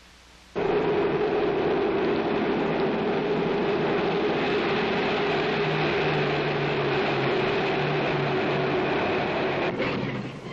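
Speeding train running at speed: a steady noise with a hum running through it, starting suddenly about half a second in.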